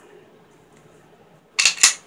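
Two sharp metallic clicks in quick succession, about a second and a half in, from the old Colt 1911 pistol or its magazine being worked by hand.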